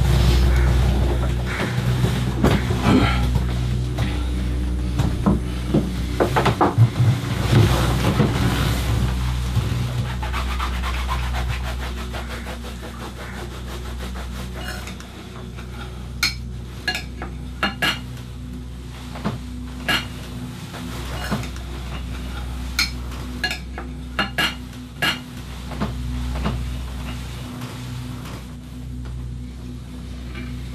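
Crockery and cutlery clinking against a plate as bread is handled at a table, a scatter of sharp clicks in the second half, over a steady low hum.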